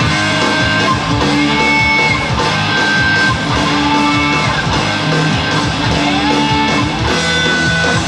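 Rock music led by electric guitar: held notes, some sliding or bending up and down in pitch, over a full low end that runs without a break.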